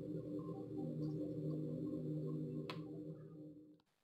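A steady low drone made of several level tones, with a single click about three seconds in, cutting off suddenly just before the end.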